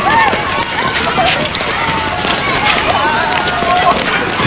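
Many children's voices shouting and calling over each other, with running footsteps on wet pavement.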